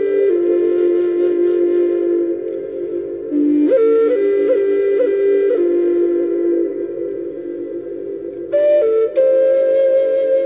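Background music: a flute-like wind instrument plays slow, held notes that step in pitch over sustained tones. New phrases begin about three and a half and eight and a half seconds in.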